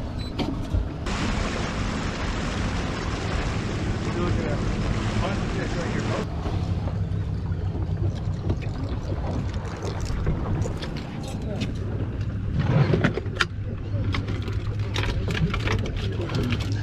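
Boat engine idling, a steady low hum under wind and water noise, with a band of hiss for a few seconds early on. Near the end come clicks and knocks as gear is handled in a tackle drawer.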